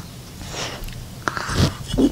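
A child's breaths and mouth noises right up against the camera microphone, with a few soft clicks.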